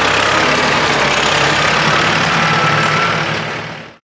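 Kubota loader tractor's diesel engine running steadily close by, fading out near the end.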